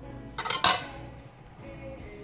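Two or three sharp metal clinks with a brief ring about half a second in: a stainless-steel pot and a metal utensil or lid knocking together.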